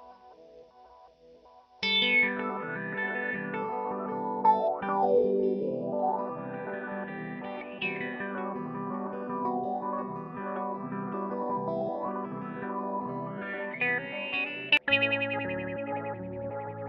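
Electric guitar, a custom Jazzmaster through a Mu-Tron III / Lovetone Meatball-style envelope filter with an EHX Memory Boy analog delay, into a Yamaha THR10 amp. A faint tail fades out first. About two seconds in a chord is struck, and the filter sweeps down from bright to dark and back up in repeated wah-like swoops. Near the end the sound breaks off sharply and a new chord comes in.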